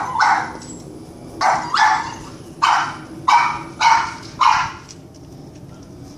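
Boston terrier barking in a quick series of about eight sharp barks, falling silent about five seconds in, at a squirrel in the tree.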